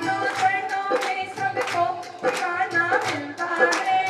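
Devotional song with musical accompaniment and a crowd clapping along in rhythm, about three claps a second.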